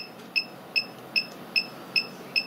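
Ultra Beam antenna controller beeping steadily, short high-pitched beeps about two and a half per second, while its display shows the antenna elements moving: the stepper motors are retuning the antenna to the 15 m band.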